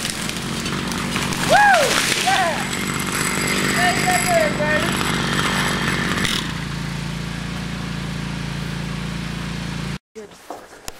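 Gas chainsaw engine running, settling to a steadier, quieter idle about six seconds in. A few short voice calls come over it early on.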